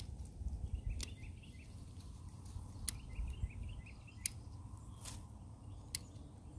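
Hand pruning shears snipping salvia stems: about six sharp clicks, one every second or so. Faint bird chirps sound in the background.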